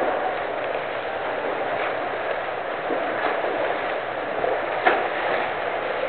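A swimmer doing butterfly stroke in a pool: a steady wash of splashing water, with a few sharper splashes standing out.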